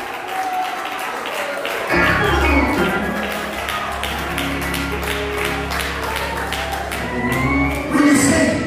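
Live gospel music in a church: a steady beat of drums and hand-clapping, with sustained low bass notes and chords coming in suddenly about two seconds in.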